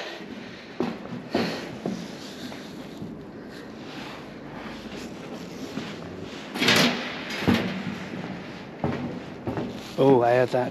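Scattered knocks and footsteps on a walkway of metal railings and wooden boards, with a louder clatter about seven seconds in, over a steady faint rush of wind through the roof space.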